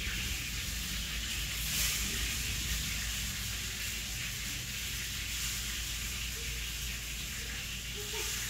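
A steady hiss with a low rumble underneath, unchanging throughout.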